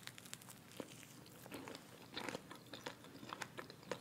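Biting into and chewing a Popeyes fried chicken sandwich close to the microphone: quiet, scattered crunches and crackles from the crisp breading.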